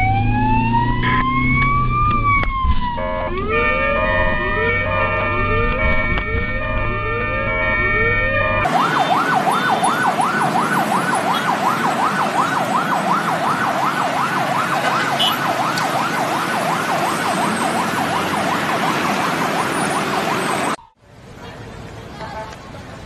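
Ambulance sirens. First a slow wail that rises and falls over about three seconds, then short rising sweeps repeated about once a second, both heard with the rumble of the vehicle's own engine inside the cab. After a sudden change, a fast yelp warbling about three times a second, which cuts off abruptly near the end.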